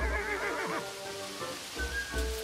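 A horse whinnies once in the first second, its pitch wavering and falling, over steady rain and background music with long held notes.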